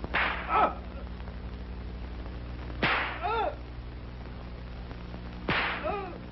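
Three lashes of a whip in a flogging, each a sharp crack about two and a half seconds apart, each followed by a man's short cry of pain.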